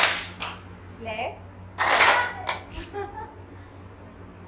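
A group of schoolchildren clapping once together, one sharp clap with a smaller straggling clap about half a second later. About two seconds in comes a louder burst of many children calling out at once, with a few single voices around it.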